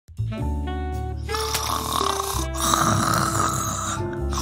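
Background music with a person snoring over it, the snoring rough and strongest in the second half.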